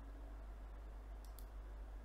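Two faint, brief clicks a little past halfway through, over a steady low hum.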